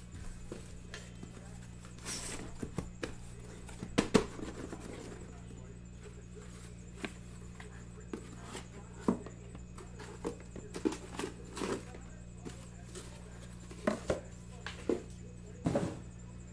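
A cardboard case being opened and the shrink-wrapped hobby boxes inside lifted out and set down: scattered knocks, clicks and rustles of cardboard and plastic, with a short scrape about two seconds in and the loudest knocks about four seconds in.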